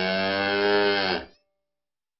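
A single cow moo, held steady for a little over a second, its pitch dipping slightly as it ends.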